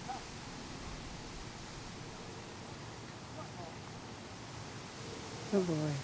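Steady outdoor background hiss in an open field, with no distinct events; a person's voice begins near the end.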